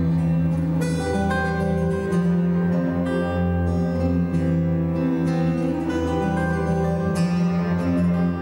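Instrumental live music: an acoustic guitar picked over long, steady low notes from an electric bass guitar played with a bow.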